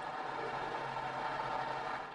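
Cooling fan of a 2017 Dell Inspiron 15 Gaming laptop running with a steady hiss. It is noisier than the owner would like, which he thinks is probably down to the machine's heftier specification.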